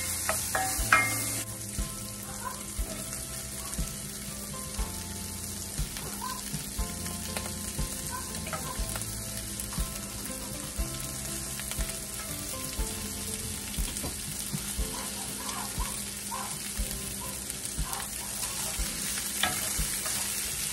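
Steak strips, then stir-fry vegetables, sizzling in oil in a hot cast-iron skillet while being stirred with a wooden spoon; the sizzle is loudest in the first second or so, then softer. Faint background music runs underneath.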